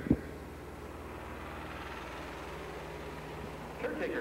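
Steady low background hum and hiss with no clear event, and a brief low thump right at the start.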